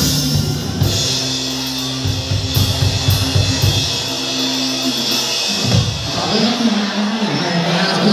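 A live rock band playing: electric guitars, bass and drum kit with cymbals. The low bass notes drop out about five and a half seconds in.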